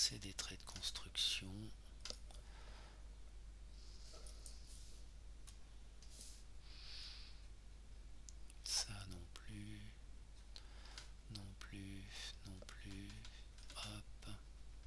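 Scattered clicks from computer input, with soft mumbled words in between over a steady low hum.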